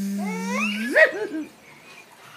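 A woman's voice imitating a bee with a long, steady buzzing hum that slides sharply up in pitch about a second in and stops soon after.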